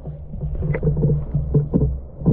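Muffled underwater sound from a GoPro Hero8 as it goes under the river's surface. Water sloshing against the camera gives a steady low rumble with irregular soft thumps, several a second.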